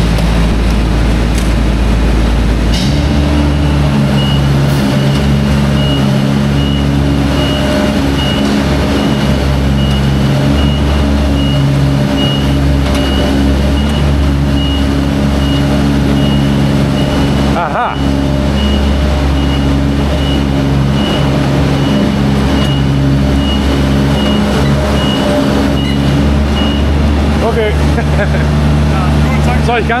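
Scissor-lift work platform running: a steady motor hum with its motion alarm giving a repeated high beep, starting about three seconds in and stopping near the end.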